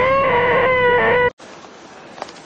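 A man's loud, high-pitched held cry lasting just over a second, cut off abruptly.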